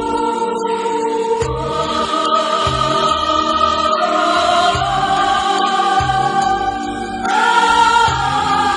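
A choir singing a slow hymn in long held notes that change every second or two, over a soft instrumental accompaniment with a gentle low pulse.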